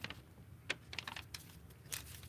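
Faint, scattered light clicks and taps from hands handling a paper slip and pen on a desk.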